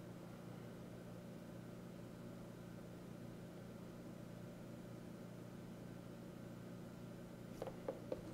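Faint steady low hum with a light hiss: room tone. A couple of faint clicks near the end.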